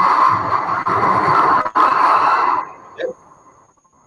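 A man laughing hard, the laughter harsh and noisy through the call audio, breaking off about two and a half seconds in.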